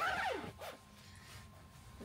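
A brief laugh trailing off in a falling pitch, then faint rustling of clothing as a padded coat is pulled on.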